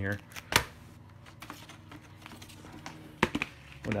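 Cardboard vinyl record jackets being handled and flipped through in a record crate: a sharp knock about half a second in, soft sliding and rustling of sleeves, then another sharp knock a little after three seconds.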